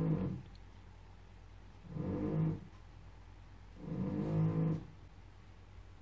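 Soft background music: three slow, sustained notes or chords, evenly spaced about two seconds apart.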